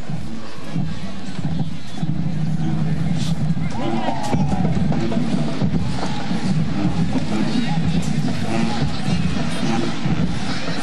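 Marching band playing in the stands over steady stadium crowd noise.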